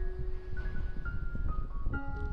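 Background music: a slow melody of single held notes stepping up and down, over a steady low rumble.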